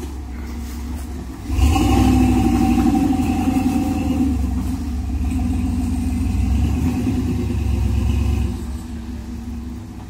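Engine of a Chevy S10 rock crawler, revving up sharply about a second and a half in and held under load for about seven seconds as the truck climbs a steep rock ledge, then easing back to a lower speed near the end.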